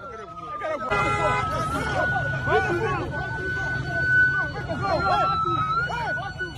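Street crowd shouting and chattering over a steady, high siren tone that wavers slightly in pitch. A short horn blast sounds about a second in.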